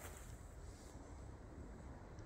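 Near silence: faint outdoor background with a low rumble.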